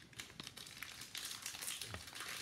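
Foil trading-card pack wrapper crinkling as it is handled, an irregular light crackle.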